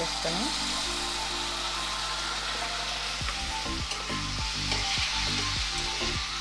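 Chopped tomatoes sizzling in hot oil over fried onions in a metal kadai: a steady frying hiss that swells as they go in. A metal spatula stirring in the pan adds a few low knocks in the second half.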